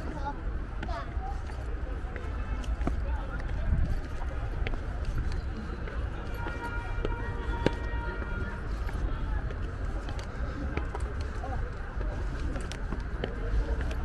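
Indistinct voices at a distance over a steady low rumble on the microphone, with a brief held tone in the middle.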